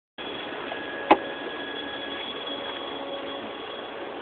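Steady background hiss with a few faint steady tones, broken by a single sharp click about a second in.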